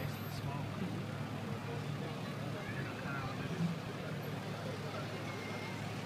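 Pickup trucks' engines running steadily at a drag strip starting line, a low even rumble with no revving, under the faint chatter of spectators.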